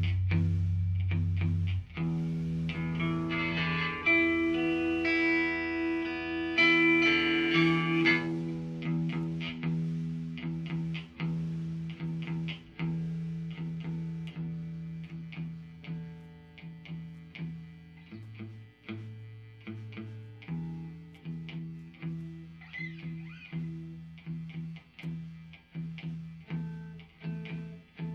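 Instrumental opening of a post-hardcore song: electric guitar through effects picking a repeating figure of notes over a low held note. It is fuller and louder for about the first eight seconds, then thins to a quieter, steady picked pattern.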